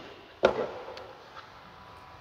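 A single dull thump about half a second in, followed by a faint click near the middle, as the truck's rear seat cushion is set back down.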